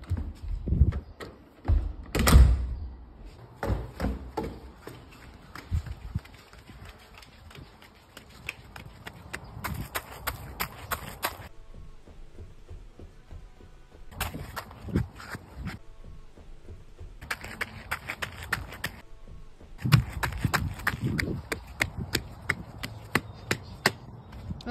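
Footsteps and scuffing with irregular knocks and thumps, in uneven clusters with stretches of rustling; the loudest thump comes about two seconds in.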